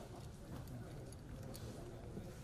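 Steady low room rumble with a couple of light taps and faint, indistinct voices.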